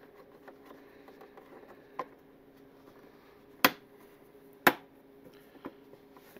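Motorcycle fairing knocking sharply twice, about a second apart, with lighter taps around them, as it is pushed and shifted by hand to line its screw holes up with the mounts. A faint steady hum runs underneath.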